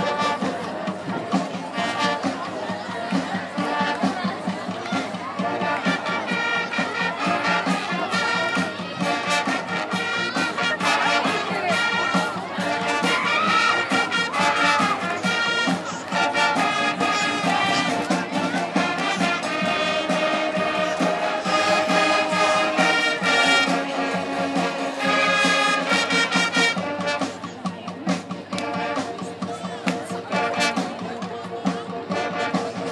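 A marching band playing, trumpets and trombones carrying the tune in sustained notes and chords over a steady beat of short percussive strokes.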